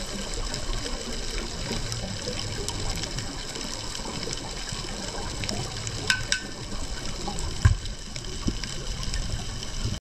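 Underwater ambience picked up through a GoPro's waterproof housing: a steady low water rush with scattered faint clicks. A few sharper clicks come about six seconds in, and a short thump near eight seconds is the loudest moment.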